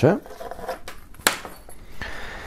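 Handling noises as a black fabric belt bag is lifted out of a cardboard box and set aside: faint rustling with a few light clicks, the sharpest about a second and a quarter in.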